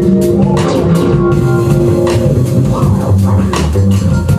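Live band playing: drum kit with frequent cymbal and drum strokes, a walking double bass line, and keyboards holding sustained notes.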